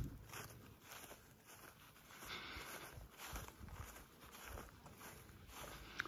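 Faint, irregular footsteps with long grass rustling underfoot as someone walks through rough field vegetation.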